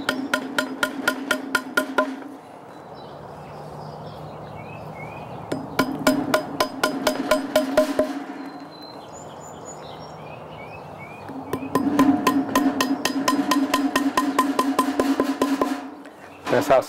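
Hammer tapping wooden mushroom-spawn dowel plugs into drilled holes in a hardwood log: three runs of rapid light taps, about six a second, the last run the longest, with a steady ringing tone beneath the taps.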